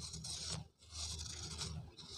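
Knife blade shaving the edge of a pure cement round, a scraping in two strokes with a brief pause just under a second in.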